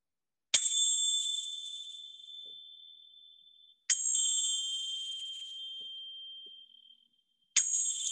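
Small tingsha hand cymbals struck together three times, about three and a half seconds apart, each strike ringing high and clear and fading over about three seconds: the signal that closes the final relaxation (Shavasana).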